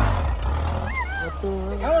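A dune buggy's engine, an air-cooled VW Beetle (Vocho) flat-four, running with a steady low rumble under the riders.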